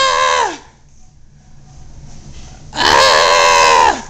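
A toddler's pretend bear roars: two high-pitched shouts. The first is short, at the very start, and falls in pitch. The second comes about three seconds in and is longer, louder and rougher.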